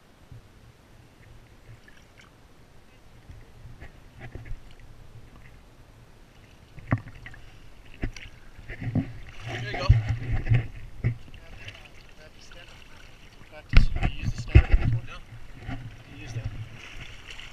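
Sea water sloshing and splashing around a camera held at the waterline. It is quiet at first, with a sharp knock about seven seconds in, then bouts of splashing around ten seconds and again near the end.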